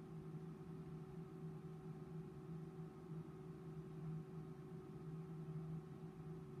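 Faint, steady hum of a tensile testing machine's drive as it slowly pulls an aluminum specimen under load mid-test. The low tone swells and fades slightly, and there are no sudden sounds.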